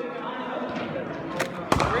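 A cricket ball striking hard: two sharp knocks about a second and a half in, the second louder and echoing round the sports hall, over voices in the hall.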